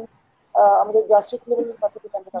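Speech only: a woman talking, heard over a video-call link, after a half-second pause at the start.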